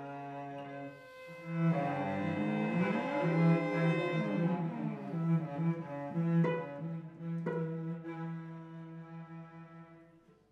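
A cello quartet playing: held low chords swell up about a second and a half in, with sliding glissandi arching above a sustained low note. Two sharp accented notes come around the middle, then the sound fades away near the end.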